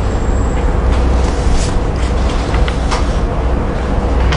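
A loud, steady low rumble with a hiss over it, with a few faint ticks in the second half.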